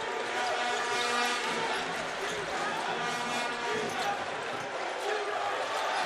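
A basketball being dribbled on a hardwood court under a steady din of arena crowd noise.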